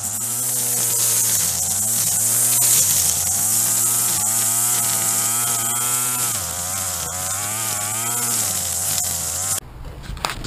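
String trimmer (weed eater) motor running hard, its pitch rising and falling over and over as it is throttled, with a steady high whir from the spinning line. It cuts off suddenly near the end.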